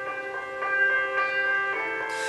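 Instrumental backing music between sung lines of a pop ballad: held chords, with new chords coming in about a second in and again near the end.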